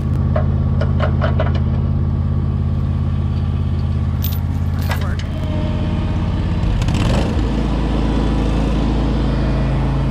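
Ventrac compact tractor engine running steadily, with steel tow chain links clinking several times in the first second or two. About seven seconds in, the engine note changes and then settles into a steady run again.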